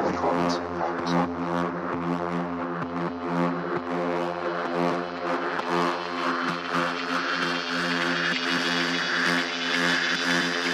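Techno music: a sustained, droning synth chord over a steady bass, with faint regular ticks on top and a brighter upper layer swelling in the second half.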